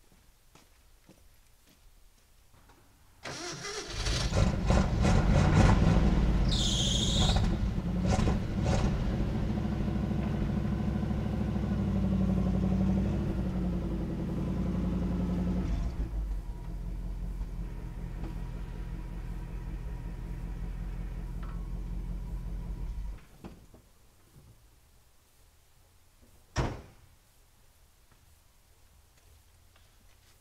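Old flatbed pickup truck's engine starting about three seconds in and revving, with a brief high squeal as it revs, then running more quietly as the truck is moved, and shutting off. A single sharp slam, like the truck door shutting, near the end.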